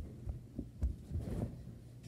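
A few dull, low thumps followed by a brief scuffle: a child's body and limbs landing on and moving across a carpeted floor close to the phone.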